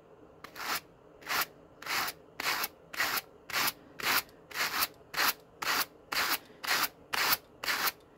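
Two wire-toothed hand carders brushing Malamute dog fur, one carder drawn across the other in short rasping strokes at a steady pace of about two a second.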